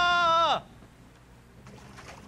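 A person's long, loud held yell at a steady pitch that slides sharply down and breaks off about half a second in.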